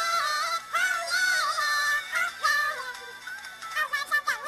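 A girl singing a melody in a high voice, holding notes and gliding between them, with the voice sounding electronically pitch-altered. It gets a little quieter after the middle.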